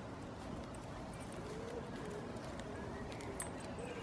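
Quiet outdoor ambience with a distant bird cooing, a run of soft low rising-and-falling notes repeating about once a second, and a few faint light clicks.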